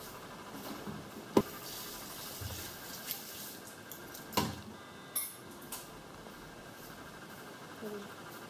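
A few sharp clicks and knocks from small objects handled on a table. The loudest comes about a second and a half in and another about four and a half seconds in, with light rustling between.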